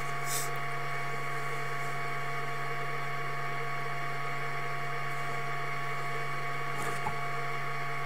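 Steady electrical hum with hiss and a few constant higher tones, the line noise picked up by a sewer inspection camera's recording system.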